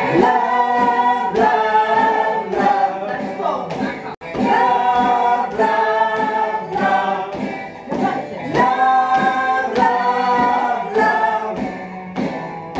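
A group of voices singing a song together, with a brief sudden break in the sound about four seconds in.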